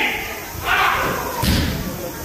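A single heavy thud about one and a half seconds in, typical of a body landing on the tatami mat as an aikido partner takes the fall from a throw. A short rushing noise comes shortly before it.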